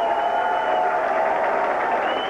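Audience applauding and cheering after a live band's song ends, with a thin steady high tone through the first part.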